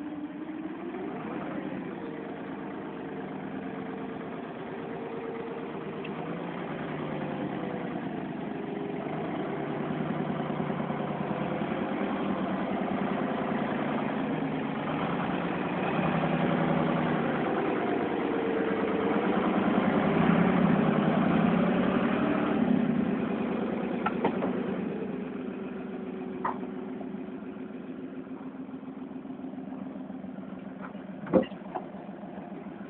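Rough-terrain forklift's engine running and revving as it drives with a load on its forks, its note rising and falling several times. It grows loudest about two-thirds of the way through as it passes close, with a few short sharp knocks near the end.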